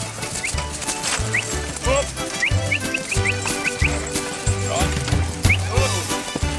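Background music with a steady, pulsing bass line, and short rising high chirps scattered over it, most of them about two to four seconds in.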